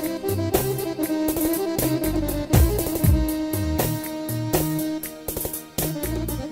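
Instrumental Balkan Roma dance music played on an electronic keyboard: a sustained lead melody in violin- and accordion-like voices over a bass line and a steady drum-machine beat.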